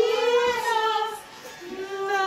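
A song with a high voice singing long, wavering notes, with a short lull just past the middle.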